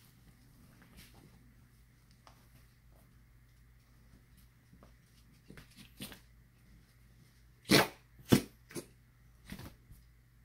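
Small dog playing with a plush toy on a bed: soft mouthing and rustling, then two loud, short dog sounds in quick succession about three-quarters of the way in, followed by two fainter ones.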